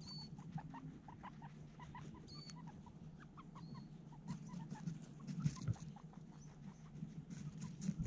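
Guinea pigs eating apple right at the microphone: irregular chewing and crunching clicks, with short soft squeaks repeating a few times a second. The louder crunches come a little after halfway and at the end.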